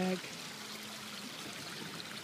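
Flowing river water, a steady rushing hiss.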